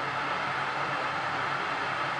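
A steady hiss with a faint low hum, unchanging throughout, from a running appliance.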